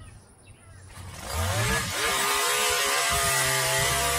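Gas hedge trimmer's small engine starting up about a second in, rising in pitch as it revs, then running steadily at high speed.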